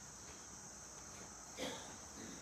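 Faint steady chirring of crickets, an even high-pitched hum, with one brief soft sound near the end.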